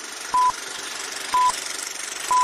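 Old-film countdown leader sound effect: two short, high, steady beeps a second apart over a continuous crackly film hiss.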